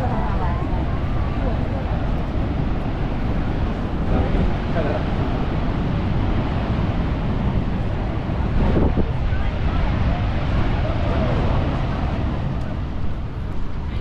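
Steady rushing roar of the falling water of Niagara Falls mixed with wind buffeting the microphone, with passers-by talking faintly.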